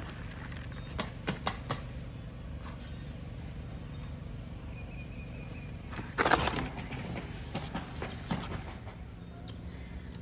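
Steady low outdoor hum, with a few light knocks and, about six seconds in, one louder brief handling noise from a black plastic nursery pot being handled.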